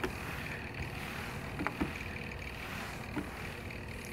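Steady low background noise, a faint rumbling hum, with a couple of soft ticks partway through.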